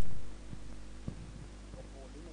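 Steady low electrical hum on the commentary audio line, with one faint click about a second in.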